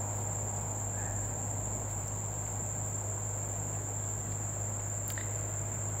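Crickets chirring steadily as one unbroken high-pitched chorus, over a low steady hum.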